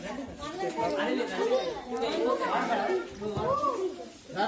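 Many voices talking at once: a group of children and adults chattering, with no single voice standing out.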